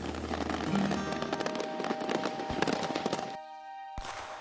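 Fireworks crackling rapidly in a dense spray over soft background music with long held notes; the crackle cuts off suddenly about three and a half seconds in, leaving only the music.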